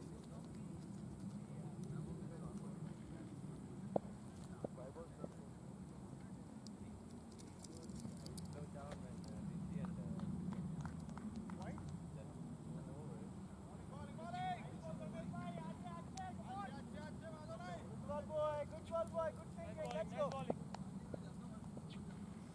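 Open-air cricket field ambience: a steady low rumble throughout, a single sharp knock about four seconds in, and distant, indistinct voices of players calling out during the last several seconds.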